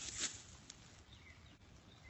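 Faint woodland ambience: a brief rustle just after the start, then low background with a few faint high chirps.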